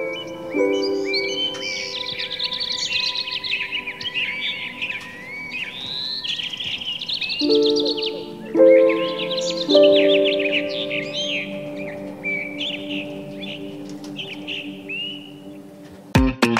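Many birds chirping and singing over soft background music of held chords that change every few seconds. The birdsong is busiest in the first ten seconds and thins toward the end.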